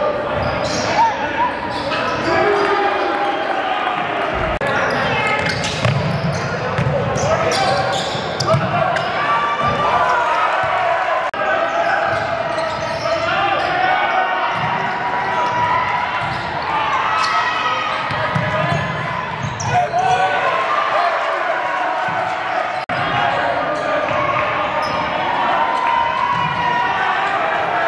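Live game sound in a gymnasium: a basketball bouncing on the hardwood court amid indistinct voices of players and spectators, echoing in the large hall.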